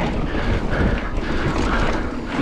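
Mountain bike rolling over a dirt trail: tyre noise on the ground with the bike rattling over bumps, and a steady rumble of wind on the microphone.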